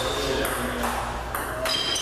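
Table tennis ball striking paddles and the table during a rally: a few sharp clicks at irregular intervals.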